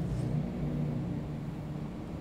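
Steady low background hum of room tone, with no distinct events.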